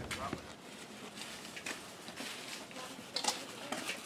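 Footsteps on a brick driveway: a few scattered steps, with a car's low rumble fading out about half a second in.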